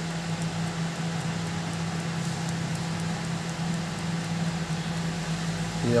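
Steady low machine hum with a faint, even ticking several times a second.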